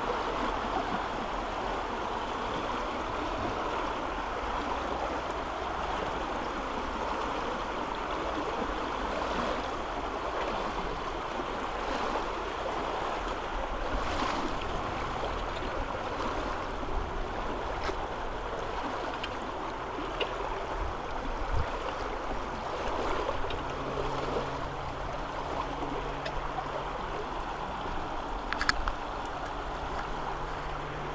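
Fast-flowing floodwater rushing steadily along a river that has burst over a footpath, a constant even wash of moving water.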